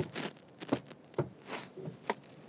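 Soft, irregular clicks and light rattles inside a pickup's cab as it rolls slowly, about five ticks in two seconds over a quiet background.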